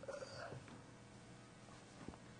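Felt chalkboard eraser rubbing across a blackboard in a short scrub during the first half second, then faint room tone.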